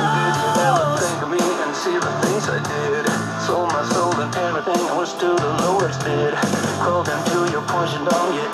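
A JBL Go 3 Bluetooth speaker playing a rock song with singing over a steady bass line.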